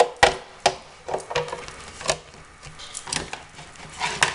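Sizzix Big Shot die-cutting and embossing machine being cranked, its plates and embossing folder passing through the rollers with a series of irregular clicks and knocks.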